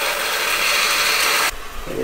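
Pressurised water rushing and hissing through the RV's plumbing, escaping at a leak near the water heater. The steady hiss cuts off abruptly about one and a half seconds in as the water supply is shut off.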